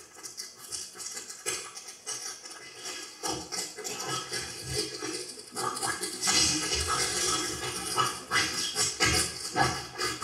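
Non-verbal, animal-like vocal sounds from a sound poet at a microphone, mixed with a sheet of paper being crumpled and rustled close to another microphone. The sounds grow louder and busier about three and a half seconds in.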